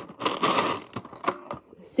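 Plastic bingo balls rattling inside a toy bingo machine's clear dome as it is turned by hand to mix and release the next ball, followed by a few sharp clicks.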